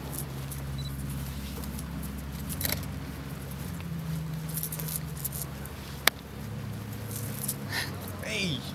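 Dancers' footsteps on grass: shoes scuffing and tapping with scattered rustles, over a low steady rumble, with one sharp click about six seconds in and no music.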